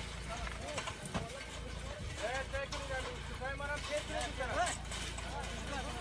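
A crowd of people shouting and calling out over one another, many voices overlapping, with a few sharp knocks among them.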